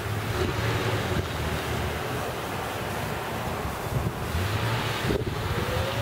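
Steady wind rushing over the microphone, with a faint low hum that comes and goes.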